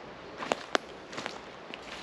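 Footsteps crunching on dry fallen leaves and pine needles on a forest floor: a few crisp crackling steps, the two sharpest close together about half a second in.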